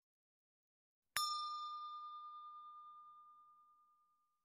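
A single bell 'ding' sound effect, struck once about a second in, ringing on one clear tone with fainter higher overtones that die away over two to three seconds.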